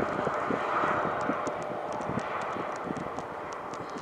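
Jet engine noise from a Boeing 737-800's CFM56-7B engines as the airliner rolls along the runway after landing: a steady hiss that slowly fades, with wind buffeting the microphone.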